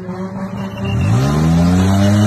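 Small van's engine revving up: its pitch rises and the sound grows louder about a second in, then holds at the higher speed.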